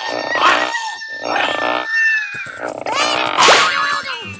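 Cartoon monsters making wordless grunts and a disgusted cry in three short bursts, the last and loudest near the end.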